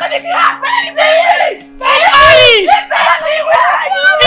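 Women screaming and shouting during a physical fight, with one long scream about two seconds in that falls in pitch.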